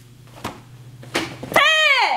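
Two sharp snaps as a karate belt is pulled tight, then a woman's kiai shout about a second and a half in: a loud, high yell that falls in pitch at the end.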